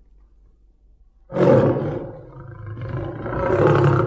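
A loud, drawn-out animal roar or yowl starting about a second in, easing off and then swelling again near the end.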